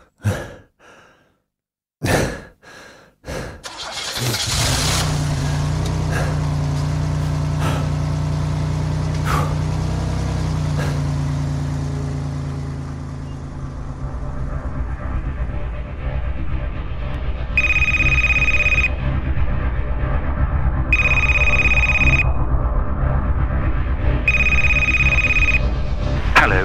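Sound effects: a few knocks and thuds, then a car engine starts about four seconds in and runs steadily. Near the end, a phone rings three times over the engine.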